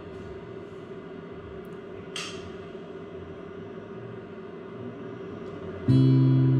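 Quiet room tone with a steady low hum and a brief soft noise about two seconds in, then an acoustic guitar chord strummed right at the very end.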